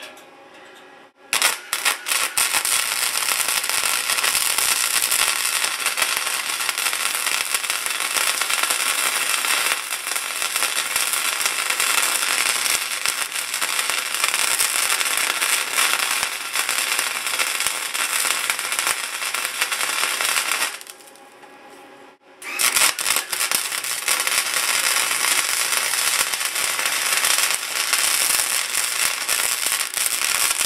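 Wire-feed welder arc crackling steadily while welding a crack in a rusty steel siren horn. It starts about a second in and stops for a second or so about two-thirds of the way through before the next run starts.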